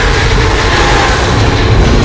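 A dinosaur's roar sound effect: loud, harsh and grinding, with a pitch that falls slightly through the middle.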